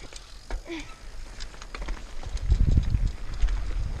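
Mountain bike rolling down a dry dirt trail: scattered clicks and rattles from the bike, then from about halfway a heavy low rumble of wind and tyre noise on the helmet-mounted camera as speed builds.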